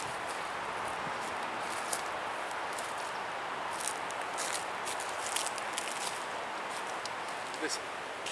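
Steady outdoor background hiss with faint, scattered light rattles and scrapes from a heavy galvanized-wire cattle panel being shifted by hand.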